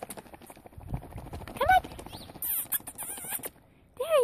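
Footsteps crunching on packed snow in a walking rhythm, with a short high-pitched vocal call from a woman's voice about one and a half seconds in.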